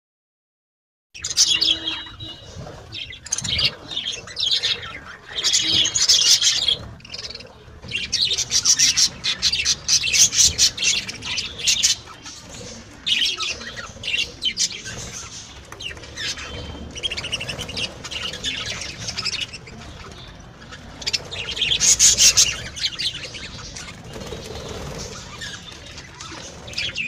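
Budgerigars chattering and chirping in repeated bursts, starting about a second in.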